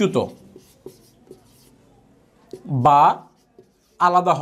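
Marker pen writing on a whiteboard: faint short scratches and taps of the strokes. A man's voice speaks briefly at the start and draws out one syllable about three seconds in.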